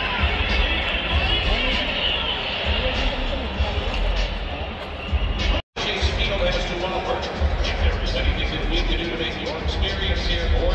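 Ballpark ambience: crowd chatter from a filling stadium mixed with music over the stadium speakers and a steady low rumble. The sound cuts out completely for a split second a little past halfway.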